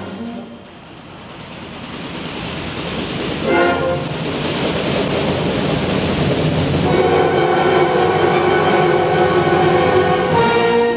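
A concert band builds a crescendo. A noisy swell grows louder from a quiet start, with a short chord about three and a half seconds in. From about seven seconds the full band holds loud sustained chords.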